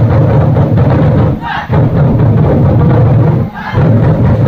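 Ensemble of Vietnamese barrel drums (trống) played loudly in a fast, dense roll for an opening drum performance. The roll breaks off twice, about a second and a half in and near the end, each time with a short unison shout from the drummers before the drumming resumes.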